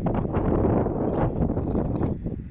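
Wind buffeting the microphone of a camera carried on a moving bicycle, with irregular clattering and rattling from the bike riding over the road surface.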